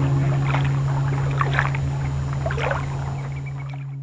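Water sloshing and splashing in irregular bursts over a low held note from the end of the song, which fades slowly.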